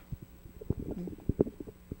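Handling noise on a handheld microphone as it is moved and passed along: a scatter of soft, low knocks and rubbing picked up through the mic itself.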